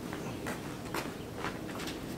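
A dog's footsteps, its claws clicking on a hard surface in light taps about every half second.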